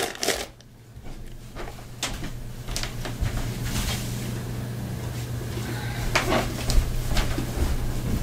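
Rustling and scattered light clicks and knocks of small objects being handled, over a steady low hum.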